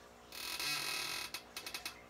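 A plastic action figure being handled and set down: about a second of scraping rustle, then a quick run of about half a dozen small clicks.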